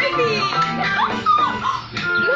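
Light background music from a children's TV show, with short, high-pitched, playful character voices: squeals and little cries that slide up and down in pitch.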